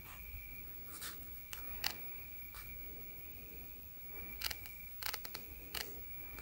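A steady high-pitched insect trill at one pitch, broken only briefly a couple of times, with about seven sharp cracks scattered through it, several close together near the end.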